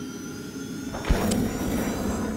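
Animated logo sting made of sound effects: a whooshing swell with a sudden deep hit about a second in.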